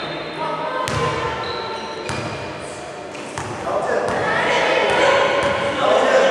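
A basketball bouncing a few times on a hardwood gym floor, each bounce ringing in a large, echoing hall. Players and spectators are shouting, growing louder about four seconds in.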